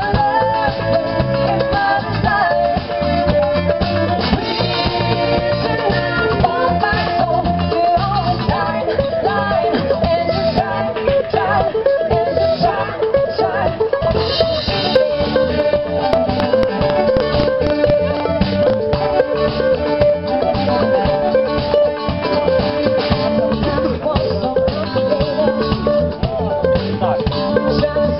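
Live country band playing an upbeat number, with fiddle, electric guitars and a drum kit.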